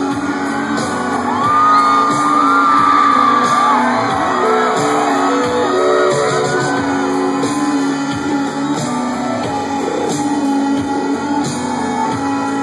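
Rock band playing live through a stadium PA, heard from the audience: guitars and keyboards hold steady chords. For the first several seconds high voices singing and whooping glide over the music.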